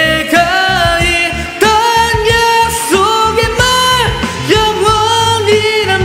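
A man singing long, high held notes into a microphone, sliding up into each one, over a loud rock-ballad karaoke backing track with bass and drums.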